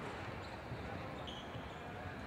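Quiet badminton-hall ambience with scattered faint low thuds and a brief faint high squeak about two-thirds of the way through.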